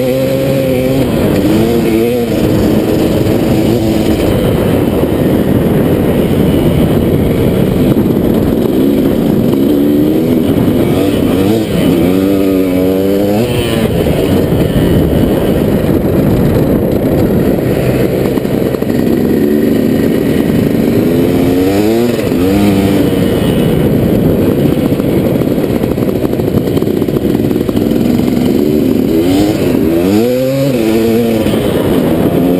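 2001 KTM 380 MXC's single-cylinder two-stroke engine run hard along a dirt track, its pitch sweeping up and down several times as the rider works the throttle and gears.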